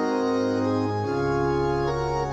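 Church organ playing the introduction to the closing hymn: sustained, held chords, changing to a new chord about a second in.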